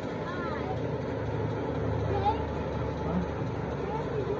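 Indistinct voices in the background, in short fragments, over a steady low hum that swells slightly in the middle.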